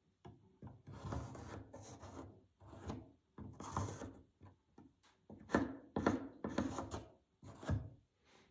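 Pencil drawing on a tape-covered wooden block: a series of about ten scratchy strokes, some short and some lasting most of a second, with short gaps between them.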